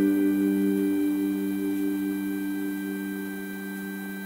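The song's final guitar chord ringing out after being struck just before, a held chord that slowly fades away.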